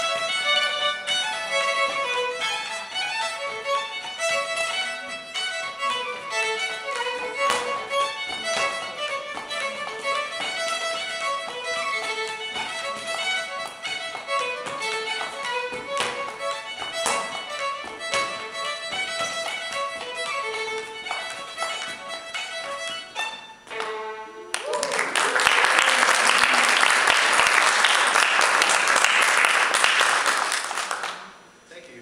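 A solo Cape Breton fiddle plays a step-dance tune, with the dancer's shoes tapping on the floor through it. The tune ends about 24 seconds in, and audience applause fills the last few seconds.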